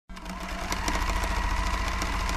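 Sewing machine stitching at speed: a steady motor hum with rapid needle clicks, growing louder over the first half-second.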